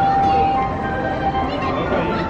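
Music with a simple melody of held notes, over a layer of crowd chatter.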